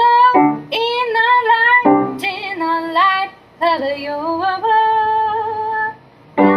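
Woman singing a slow melody to her own grand piano accompaniment, in three phrases, the last ending on a long held note.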